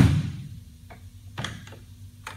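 Fiberglass roadster door shutting with one loud thump as its bear claw latch catches. A few light clicks follow, the loudest about a second and a half in, as the latch is worked and the door opened again.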